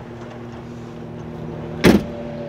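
A steady low background hum with a few faint steady tones, broken near the end by one sharp, loud knock.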